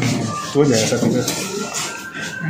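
Stacked plastic containers being lifted and handled, rubbing and scraping against each other, with a voice talking briefly about halfway through.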